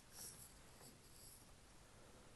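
Near silence: room tone, with a faint brief rustle about a quarter second in.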